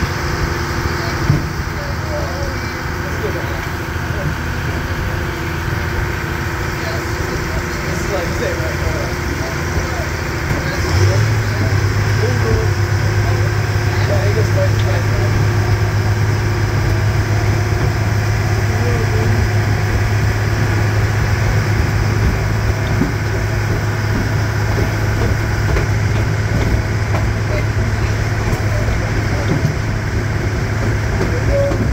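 Diesel locomotive engine running while the train rolls along. About a third of the way in, a strong steady low drone comes in, the sound grows louder, and it holds from then on.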